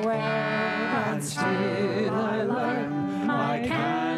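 Live Irish folk song: voices singing over steady instrumental accompaniment that includes a concertina.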